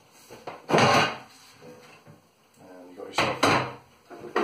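Plastic clips on a DeWalt DCV582 wet and dry vacuum being unclipped and its motor head lifted off the tank: two loud plastic clacks, about a second in and near the end.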